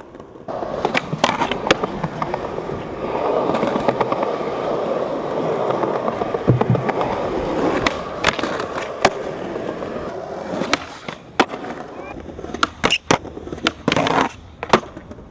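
Skateboard wheels rolling over paving with a steady grinding rumble, broken by sharp clacks of the tail popping and the board landing. The rolling stops about ten seconds in, and the last few seconds hold a run of separate clacks.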